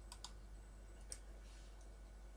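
Faint computer mouse clicks: a quick pair just after the start and a single click about a second in, over a low steady hum.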